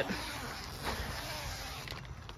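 Door zipper of an Ozark Trail Flat Creek cabin tent being pulled open: a steady rasp of the slider running along the zipper.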